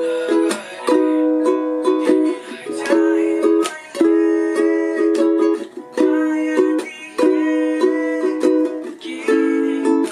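Ukulele strummed in a steady rhythmic pattern with short breaks, playing the chords E, B, C-sharp minor, B and A.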